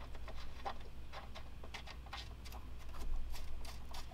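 Light, irregular ticks and taps of hands handling an aluminum radiator shroud while finger-threading its Allen-head mounting screws into rubber grommets, over a steady low hum.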